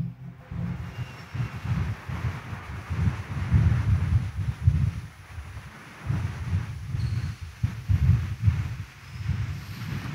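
Low, uneven rumbling room noise of a large, crowded church during the silent pause after the call to prayer, as the congregation stands: faint shuffling and stirring with no voice.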